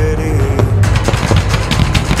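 Music with a heavy bass beat, with sharp bangs and crackles of fireworks being fired over it, more of them in the second half.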